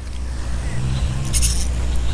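Spinning reel being cranked against a hooked fish, with short high rattles about halfway through, over a steady low rumble.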